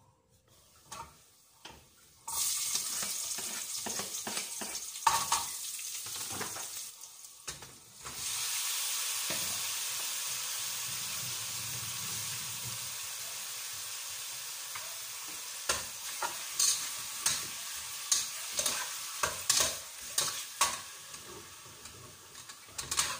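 Food frying in hot oil on a gas stove: a loud sizzle starts suddenly a couple of seconds in, breaks off briefly, then carries on and slowly fades. From about two-thirds through, a utensil clicks and scrapes against the pot as the food is stirred.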